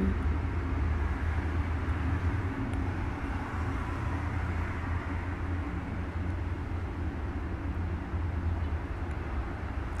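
Steady low rumble with an even hiss of background noise, unchanging throughout.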